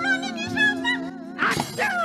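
Gamelan stage accompaniment with a high, wavering voice line. About a second and a half in there is a sudden loud crash.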